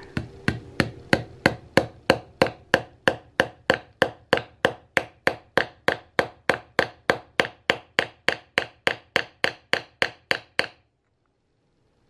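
Small hammer lightly tapping a pin into a hole drilled through a cow-horn powder horn into its walnut base plug: quick, even taps, about three a second, that stop abruptly about a second before the end.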